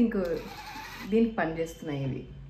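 Braun epilator running, its motor and rotating tweezer head buzzing steadily from about half a second in, under a woman's speech.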